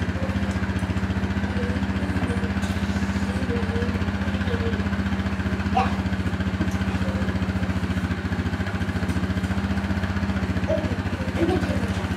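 A motor running with a steady low hum and a fast, even pulse, unchanging throughout.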